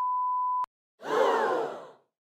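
Censor bleep: a steady pure 1 kHz beep that stops abruptly. After a short silence comes a louder edited-in sound effect about a second long, its pitch sliding down.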